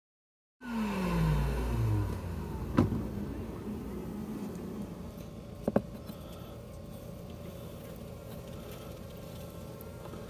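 A motor vehicle passing by, its engine note falling steadily in pitch as it fades away. Two sharp clicks follow, a few seconds apart, over a steady low background.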